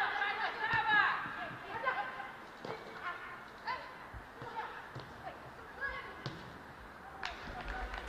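Pitch-side sound of a women's football match: players shouting and calling to each other, loudest in the first second or so, with a few dull thuds of the ball being kicked scattered through the rest.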